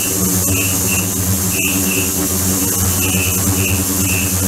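Ultrasonic tank running with its water churning: a steady, loud buzzing hum under a high hiss, with short high-pitched chirps, often in pairs, about once a second.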